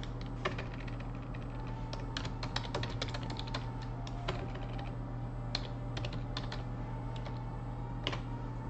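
Typing on a computer keyboard: a run of keystrokes, densest about two to three and a half seconds in, then scattered single taps, over a steady low hum.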